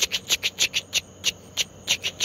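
Night insect calling: a rapid train of short, sharp chirps, about five or six a second, spacing out a little in the second half.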